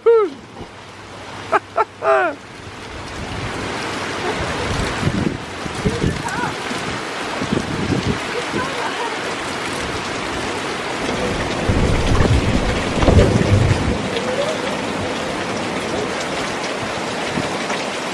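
Heavy rain falling on open water, a steady dense hiss that swells up a few seconds in, with a few low rumbles through the middle.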